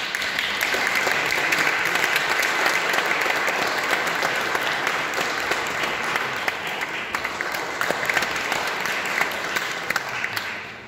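Audience applauding: dense, steady clapping that begins to die away at the very end.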